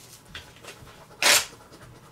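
A husky gives one short, breathy snort about a second in, louder than anything else here. Around it, lottery scratch-off tickets are scratched faintly.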